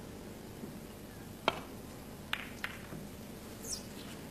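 Snooker balls clicking: one sharp click about a second and a half in, then two quick clicks close together a second later, over a steady hiss.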